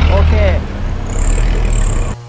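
Low rumble of road traffic on a street, with a faint high thin tone in the second second.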